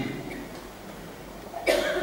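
A short cough near the end, after a low pause with only room tone.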